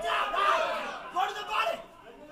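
Crowd of spectators shouting and cheering, loudest in the first second, with a couple of sharp individual yells about a second and a half in before it dies down.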